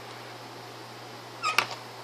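A short, high-pitched cry with a sliding pitch, about one and a half seconds in, over faint steady room hum.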